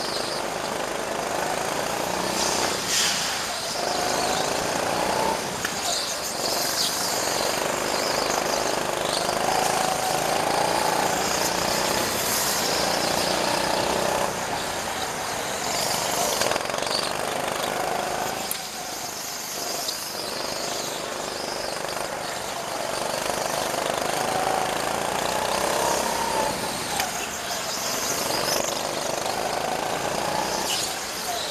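Rental go-kart engines running hard on board a kart lapping an indoor track, the engine note rising and falling again and again as the karts speed up and slow for the corners, over a steady wash of road and wind noise.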